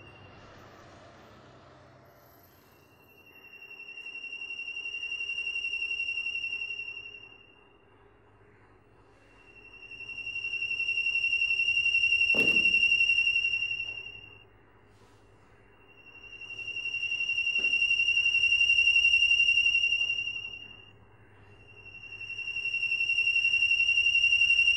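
A high, steady electronic tone from the drama's background score swells in and fades out in four slow waves, each about four seconds long, setting a tense mood. A single sharp knock comes about halfway through.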